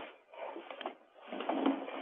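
Background noise over a telephone conference line, in two short stretches, with no one speaking.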